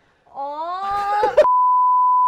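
A drawn-out, gently rising voice-like sound, then, cutting in sharply about a second and a half in, a steady single-pitch test-tone bleep of the kind played with colour bars.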